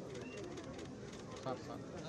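Faint outdoor background of a crowd's distant, indistinct voices, with one brief high chirp about a quarter second in.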